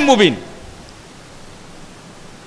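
A man's voice finishes a word right at the start, then a pause holding only a steady, faint hiss from the recording's background.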